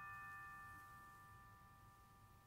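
Several notes of tuned metal mallet percussion left ringing together after being struck, a faint chord of high tones slowly fading away with no new strikes.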